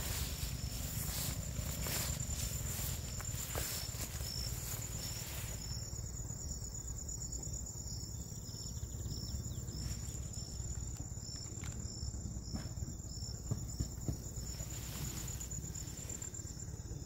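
Crickets calling in the grass: one steady high-pitched trill, with a second caller's short chirps repeating about once or twice a second, over a low rumble of handling or wind.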